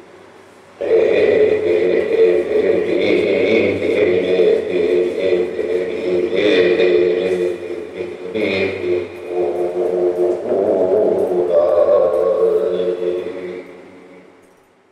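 Music of droning, sustained chanted voices, improvised on a Korku death song. It comes in suddenly about a second in and fades out near the end.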